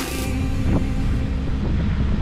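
Background music cuts off just at the start, leaving a steady rush of wind on the microphone and water around a sailing yacht under way in choppy water.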